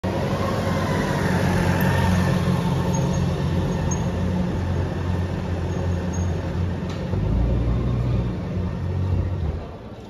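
Engines of police escort motorcycles running at low speed close by, then a black Audi A8 saloon pulling up; the low engine rumble drops away sharply just before the end as the car stops.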